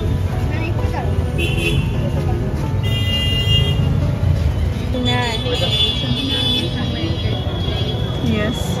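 Street traffic with a steady rumble and a vehicle horn tooting about three seconds in, with people's voices from about five seconds.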